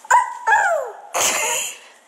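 A toddler's short high-pitched vocal cries: one brief yelp, then a second that slides down in pitch, followed by a short breathy noise.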